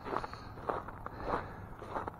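Footsteps on snow-covered ground, about four unhurried steps.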